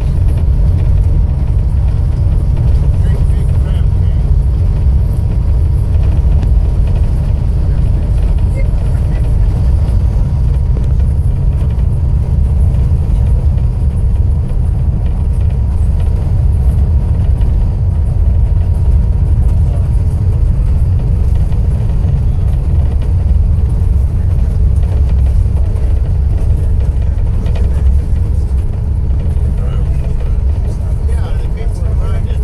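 Moving car on a rough paved road: a loud, steady low rumble of tyres and engine.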